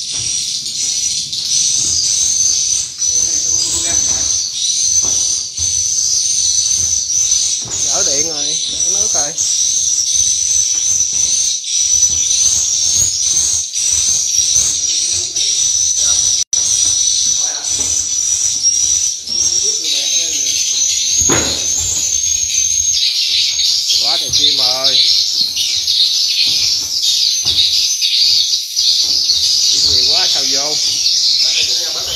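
Swiftlet calls: a dense, unbroken high-pitched twittering that fills the swiftlet house, growing fuller and louder from about twenty seconds in.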